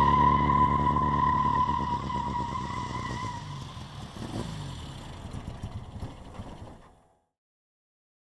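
An Austin-Healey 'Bugeye' Sprite driving past and away, its sound fading over several seconds, with a steady high whine that dies out about three seconds in. The sound cuts off suddenly about seven seconds in.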